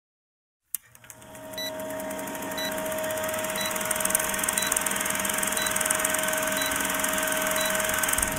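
Old-film countdown sound effect: a film projector's steady whirr and hum, beginning with a click about a second in and swelling over the next two seconds, with a short high beep once a second as the numbers count down.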